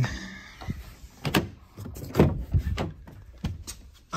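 Pickup truck door being pulled open by its handle: a run of latch clicks and knocks, the loudest about two seconds in.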